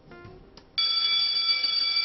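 A bell rings, held steady for over a second, starting under a second in: an end-of-class school-bell sound effect. It follows the faint tail of background music.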